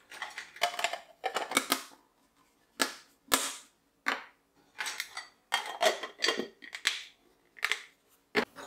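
Dishes being set into a stainless-steel wire dish drying rack, a string of sharp clinks and clatters at irregular intervals.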